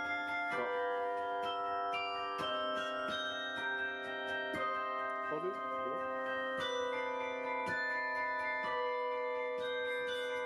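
Carillon bells playing a slow melody, each struck note ringing on and overlapping the next.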